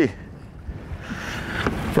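Wind on the microphone and water slapping against the side of a small fishing boat on a choppy lake. The wash of noise grows stronger over the last second.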